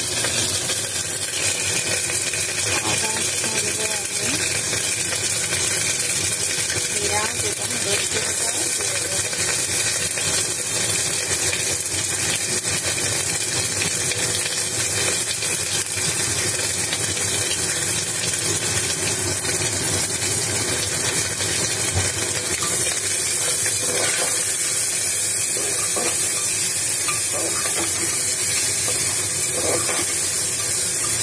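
Potato sticks frying in hot oil in an aluminium pot, a steady sizzle with occasional faint scrapes of stirring; it gets slightly louder in the last few seconds.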